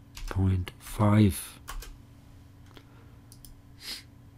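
A man's voice briefly, then a few sharp computer mouse clicks in the second half.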